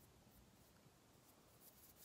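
Near silence: faint room tone with a few soft, brief rubbing strokes, a fingertip blending powder eyeshadow on the eyelid.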